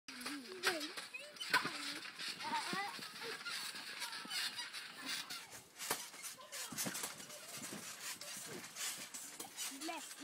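Young children's voices squealing and babbling in short high-pitched calls, with scattered thumps as people bounce on a garden trampoline.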